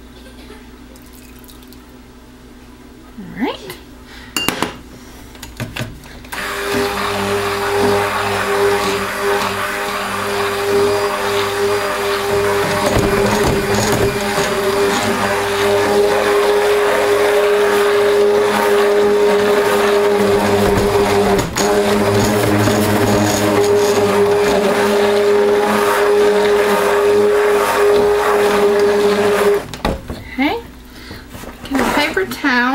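KitchenAid immersion (stick) blender running in a pot of cold process soap batter, blending the freshly added oil in. It switches on about six seconds in, runs steadily with one constant hum, and stops just before the end, after a few light clinks near the start.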